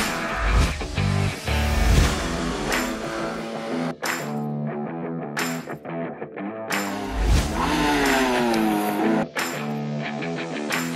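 Rock music with electric guitar and drum hits.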